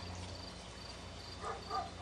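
Faint, evenly repeated high-pitched chirps of an insect, two or three a second, over a steady low hum. A brief murmur of voice comes near the end.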